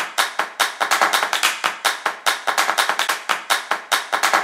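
A fast run of sharp percussive hits, about six to eight a second and slightly uneven, each dying away quickly: a percussion-only music sting over a graphics transition.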